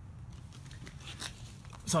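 Faint rustling and a few light clicks of hands handling blister-packed oscillating multitool blades on a cloth-covered table.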